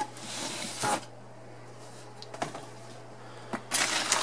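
A cardboard shoebox lid is lifted off with a short scrape, followed by a couple of light knocks. Near the end, tissue paper inside the box starts to rustle and crinkle loudly as it is pulled open.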